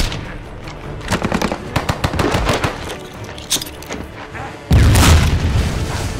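Rapid automatic rifle fire, sharp shots in quick succession, mostly in the first couple of seconds, then a sudden loud explosion with a heavy low rumble about three-quarters of the way in.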